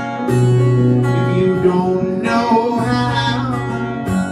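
A man singing to his own acoustic guitar: steady strummed chords, with a sung line entering about two seconds in and trailing off shortly before the end.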